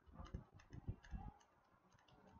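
Faint ticking clicks from a computer mouse, about half a dozen in the first second and a half as the mouse is worked, then near silence.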